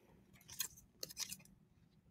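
Scissors snipping through a strip of card stock: two faint, short bursts of cutting clicks, about half a second and a second in.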